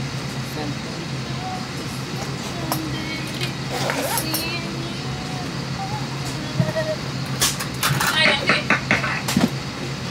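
Steady low hum of an airliner cabin with faint voices, and a quick run of clicks and clatter near the end as a carry-on bag is handled at a seat.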